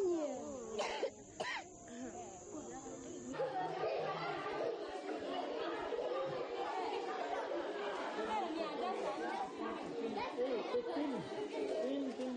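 A couple of coughs among voices in the first two seconds. From about three seconds in, many voices chatter at once, the hubbub of a room crowded with people.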